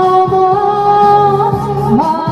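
A singer performing a slow, sentimental song over instrumental accompaniment with a steady beat, the melody notes long and held.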